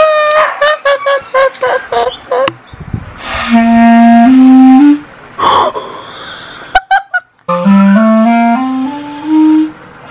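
Clarinet playing two short phrases of held notes, the second a stepwise rising run of about six notes. A woman laughs loudly over the first two seconds, before the playing starts.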